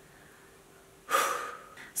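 Near silence for about a second, then a woman's audible in-breath that starts suddenly and fades over about half a second.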